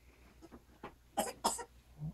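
A person coughing twice in quick succession, about a second into the clip, with a few faint handling clicks before it.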